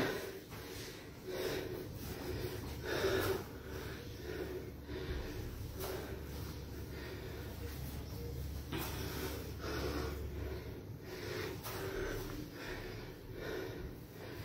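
A man breathing hard through squat reps, a short heavy breath roughly every second or two.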